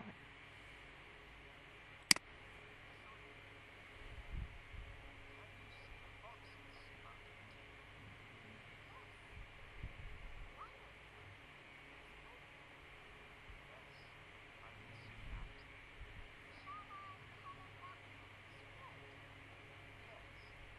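A single sharp click about two seconds in, then faint room tone with a few soft, indistinct low bumps.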